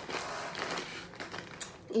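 Crinkly plastic bag of rice rustling as it is handled, with scattered light clicks.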